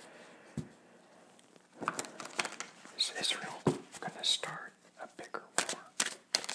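A man whispering quietly to himself, with soft clicks and rustles of tarot cards being handled as he lays out a spread; the first second or so is nearly quiet.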